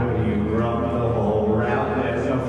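Live music holding a steady, sustained low drone, with several held tones stacked above it.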